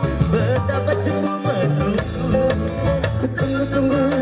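Live band music played through a PA, with a male voice singing over keyboard and a steady beat.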